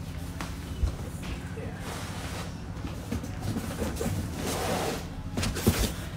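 Cardboard comic book storage boxes being handled and shifted: rustling cardboard with a couple of soft knocks, about a second in and near the end, over a low steady hum.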